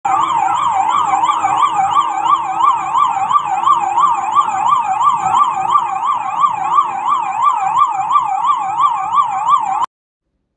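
Police vehicle siren sounding a fast up-and-down yelp, about three sweeps a second, over a faint low vehicle rumble. It cuts off suddenly near the end.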